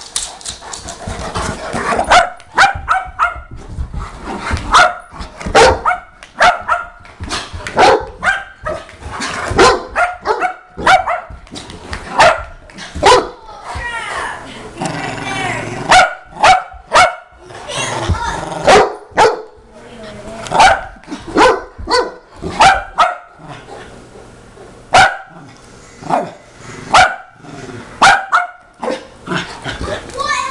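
A Parson Russell Terrier and a Saint Bernard play-fighting, with a long run of short, loud barks about one a second and a few brief pauses.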